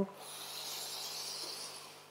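A deep breath being drawn in: a soft, steady hiss lasting about a second and a half.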